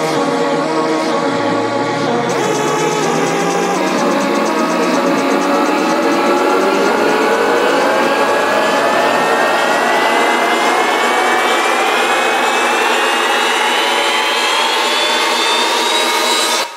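Electronic dance music build-up: a synth riser climbs steadily in pitch for about fourteen seconds over a held, bass-light texture, mimicking a jet engine spooling up.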